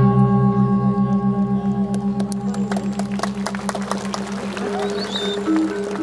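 Balinese gong kebyar gamelan: the bronze gongs and metallophones hold long ringing tones that pulse with a fast, even waver, over a few scattered light strikes. Near the end a soft melodic line of single notes comes back in.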